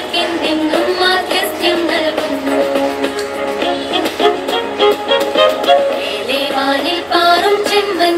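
A Malayalam jubilee anthem sung over instrumental accompaniment, the melody moving steadily without a break.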